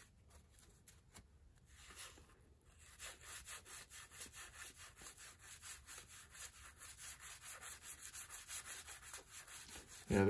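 Stack of 1984 Donruss cardboard baseball cards thumbed through one card at a time: faint, soft flicks of card edges. After a few scattered swishes, about three seconds in it settles into a quick, even run of about five flicks a second.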